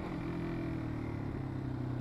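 Yamaha XT250's air-cooled single-cylinder four-stroke engine running steadily at road speed while the bike is ridden, heard over wind rush.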